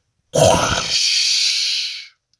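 A man's voice making a sound effect: a low, grunt-like rumble that turns into a long steady hiss, cutting off after about a second and a half. It stands for a crammed school locker being opened.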